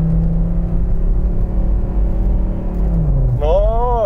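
Cabin noise in a moving Mercedes 250TD diesel: a steady low engine and road rumble, with a droning tone that holds level and then drops in pitch about three seconds in. A man's voice starts near the end.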